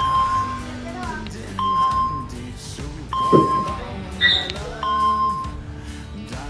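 Background music, with the spelling quiz app's correct-answer beep, a short steady tone, sounding four times about every second and a half as answers are marked right.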